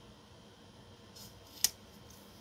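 Paper sticker being handled and pressed onto a planner page: a faint brief rustle, then one short sharp click about three quarters of the way in.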